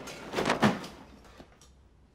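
A metal locker banged by hand: one loud bang and rattle about half a second in that dies away within a second.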